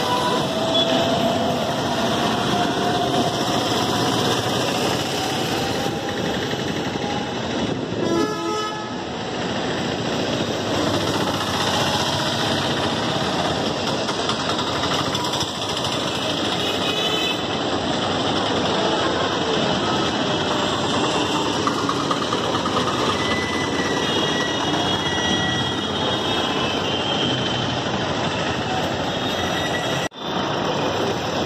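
Busy street traffic: steady engine and road noise from rickshaws, buses and motorbikes, with vehicle horns sounding briefly now and then, several of them in the later part.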